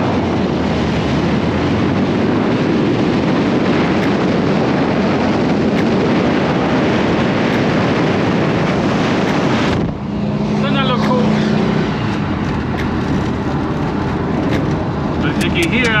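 A 1969 VW bus's air-cooled flat-four running while driving, under a steady rush of wind and road noise through the open window. This cuts off suddenly about two-thirds of the way through, leaving a steadier, lower engine drone heard inside the noisy cabin.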